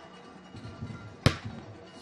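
Broadcast graphics transition sting: faint music with a single sharp hit about a second in, as the animated highlights wipe begins.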